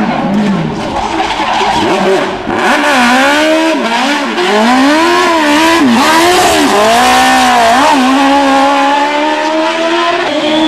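Racing car engine revving hard on a tarmac stage, its pitch rising and falling again and again with gear changes and throttle lifts through the bends. It gets louder about two and a half seconds in.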